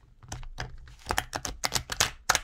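Large, stiff new oracle cards being shuffled by hand: a run of sharp clicks and slaps of card against card, coming faster from about a second in. The cards are new and sticking together.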